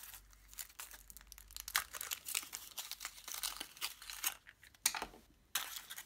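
Thin aluminium foil wrapper of a Kinder Surprise chocolate egg being peeled off by hand, crinkling in many small crackles, with a few louder crackles about four and five seconds in.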